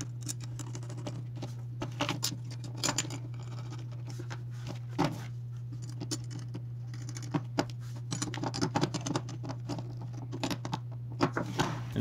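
Small metal hardware handled by hand: scattered light clicks, taps and scrapes as standoffs and screws are picked up and threaded onto a metal beam, with a steady low hum underneath.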